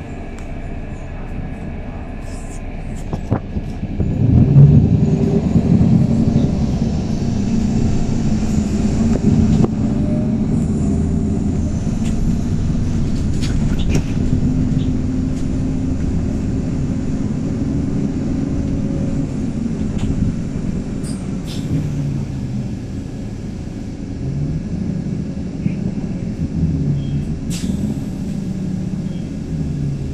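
Heard from inside the cabin of a 2019 MAN 18.310 city bus running on compressed natural gas, with a Voith automatic gearbox. The engine note rises as the bus pulls away about four seconds in, then settles into steady running, with the engine pitch falling and rising several times in the second half.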